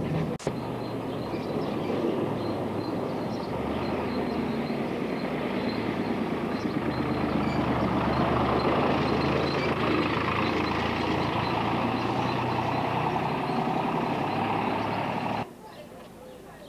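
Outdoor street noise: a steady din of voices mixed with a vehicle engine, swelling somewhat toward the middle. A sharp click about half a second in, and the sound drops away suddenly near the end.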